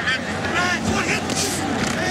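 Stadium crowd noise with indistinct shouted voices over it.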